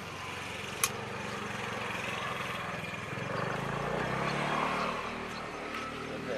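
A motor vehicle's engine passing on the road: a steady hum that swells to its loudest a little after the middle and then fades. A single sharp click comes just before the first second.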